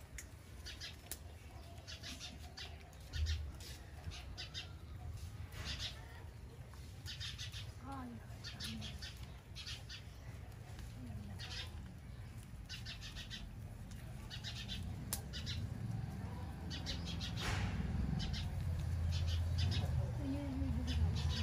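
Rabbits munching fresh green stems, with quick runs of crisp crunching clicks coming again and again as several chew at once. A low rumble grows louder near the end.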